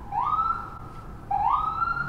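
A person whistling a siren-like pattern: a note that slides up and holds for under a second, twice.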